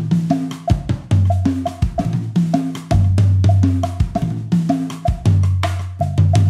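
Acoustic drum kit playing the Afro-Cuban Ñongo rhythm: fast, dense strokes on snare and bass drum with low tom notes ringing out in a pattern that repeats about once a second.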